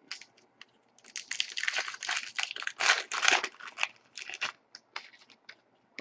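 Foil trading-card pack wrappers being torn open and crinkled by hand: a run of crackling rustles starting about a second in and lasting about three seconds, with scattered light clicks around it.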